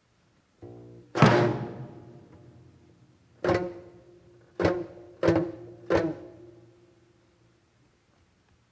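Korean traditional orchestra in a sparse, quiet passage of a geomungo concerto: a soft held note, then five sharp struck notes with long pauses between them, each ringing out over a sustained low note before fading away.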